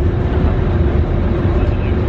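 NYC Ferry under way, heard from its open upper deck: a steady, loud low rumble of engine and wind buffeting the microphone, with a steady hum that fades out near the end.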